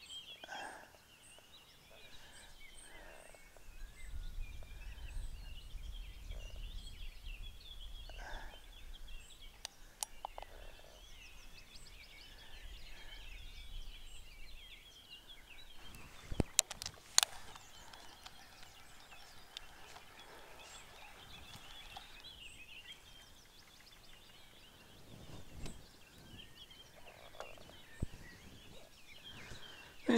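Faint chorus of small songbirds chirping and warbling throughout, over a low rumble that lasts from about four seconds in to about sixteen. Two sharp sounds stand out about sixteen and seventeen seconds in.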